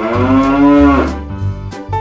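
A cow's moo, one call about a second long that sags in pitch at its end, heard over children's song music with a steady bass line.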